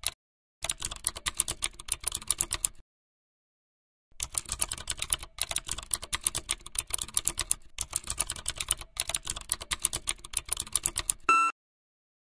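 Computer keyboard typing in fast runs of keystrokes: about two seconds of it, a pause, then about seven seconds more. A short, loud beep cuts in just after the typing stops, near the end.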